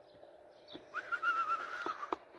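A person whistling one held, wavering note for about a second, starting about halfway through, with a faint bird chirp just before it.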